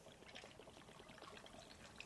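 Orange juice being poured into a glass of ice: a faint, steady trickle.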